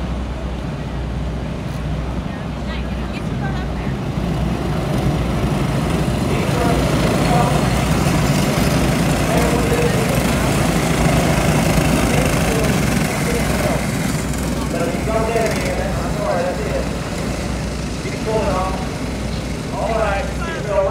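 Racing karts' small engines running in a pack around a dirt oval, growing louder as they go past in the middle and easing off after. Voices near the end.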